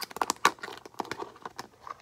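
A small plastic food-storage container being handled, giving a run of irregular clicks and knocks from its lid and sides, the sharpest about half a second in.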